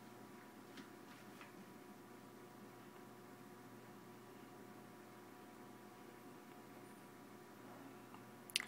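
Near silence: room tone with a faint steady hum and a couple of faint ticks in the first second and a half.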